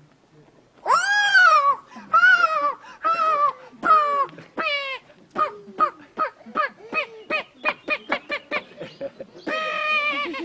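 Squawking hen calls imitated for a white hen glove puppet. Long, falling squawks come about a second apart, then turn shorter and faster and faster like a hen cackling, with one longer call near the end.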